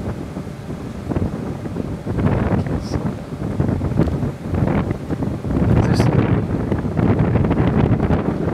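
Wind buffeting the microphone: a low, gusty rumble that grows louder about two-thirds of the way through.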